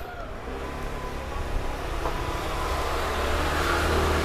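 A road vehicle's engine running on the street, a steady low hum that grows gradually louder as it approaches.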